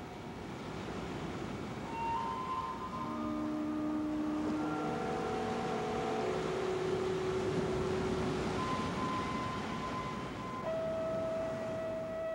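Slow music of long held tones, one or two at a time, each changing to a new pitch every second or two, over a steady rushing noise of breaking surf that grows louder about two seconds in.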